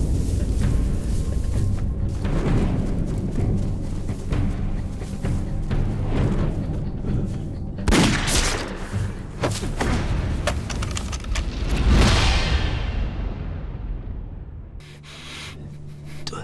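Dramatic film score mixed with gunfire and heavy booms, with a run of sharp shots and the loudest blasts about eight and twelve seconds in. The sound fades down near the end.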